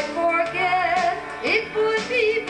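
Live music: a song played on acoustic and electric guitar, with a melody line that slides up into a note about three-quarters of the way through.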